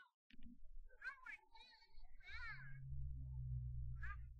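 Short, high-pitched, meow-like vocal sounds from a person, two of them gliding up and down in pitch. In the second half a low steady hum sets in and runs past the end.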